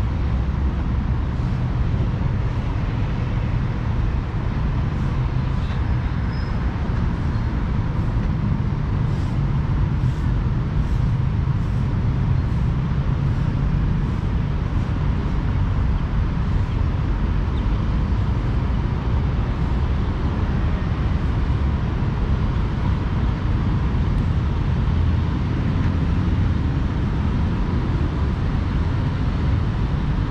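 Steady low rumble of road traffic, with faint footstep ticks about twice a second through the middle stretch.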